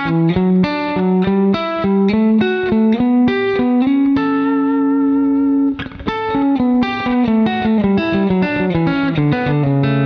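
Clean electric guitar, a Fender Telecaster, playing a country double-stop sequence: a quick run of picked notes, a double stop held for a second and a half about four seconds in, a short break near six seconds, then another run of notes stepping down.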